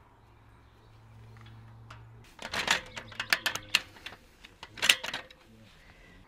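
Aluminium roof ladder parts clicking and rattling as they are handled: quick clusters of sharp metal clacks starting about two and a half seconds in, with a last burst near the end.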